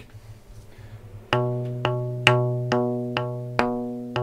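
Amplified rubber-band chitar, a small fretless wooden instrument with a piezo pickup, struck on the back of its body with a felt-headed mallet. After a faint hum, about six evenly spaced strikes come roughly two a second, starting about a second and a half in. Each is the same low ringing note that decays, with an almost synthetic tone.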